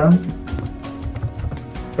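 Computer keyboard typing: a run of quick key clicks over a steady background tone.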